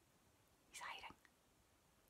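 Near silence broken by one short, breathy hiss a little under a second in.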